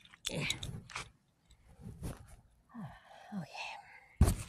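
Faint, indistinct voice sounds: a few short murmurs falling in pitch, with scattered clicks between them.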